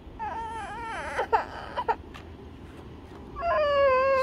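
A young girl whimpering and crying in a sulk: several short, wavering high cries in the first two seconds, then one long drawn-out wail near the end.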